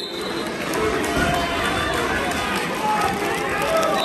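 Voices of coaches and spectators talking and calling out, several people at once.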